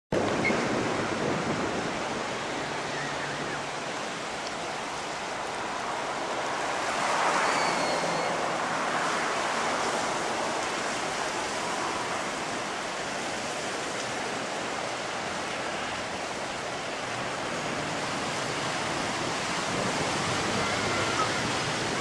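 Ocean surf washing onto a rocky shoreline, a steady rush that swells and eases, loudest about seven seconds in.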